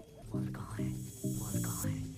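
Film background score: a string of short, low sustained notes, about two or three a second, with a faint high hiss over them that cuts off just before the end.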